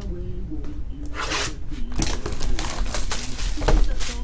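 Plastic shrink-wrap crinkling and tearing as a sealed trading-card box is unwrapped, in short rustling bursts: one about a second in, then several more from two seconds on.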